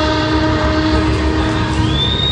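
Saxophone holding one long low note over a djembe ensemble drumming; the note stops just before the end.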